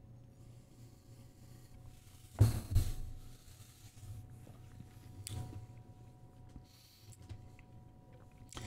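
Quiet room with a steady low hum while a sip of tequila is tasted in silence. Two short, sharp knocks come about two and a half seconds in, and a softer one a little after five seconds.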